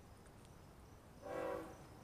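Air horn of BNSF locomotive 8220 sounding one short blast about a second and a quarter in, a chord-like tone lasting about half a second, over a faint steady background.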